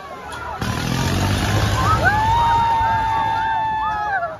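People screaming on a swinging fairground ride. A low rumble and rush of noise come up about half a second in. About halfway through one long scream rises and is held, then falls away near the end, with shorter shrieks around it.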